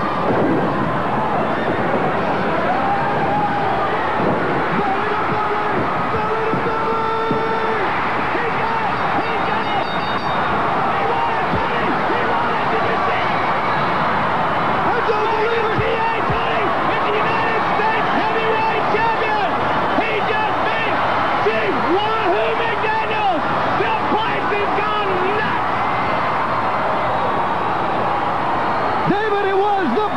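Wrestling arena crowd cheering and yelling, a continuous loud roar of many voices with individual shouts standing out, as fans celebrate the winning pin and title change.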